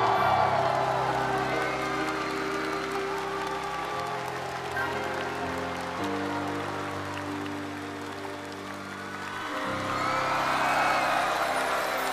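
Closing instrumental bars of a slow ballad, sustained chords that change every few seconds, with audience applause rising over them near the start and again near the end.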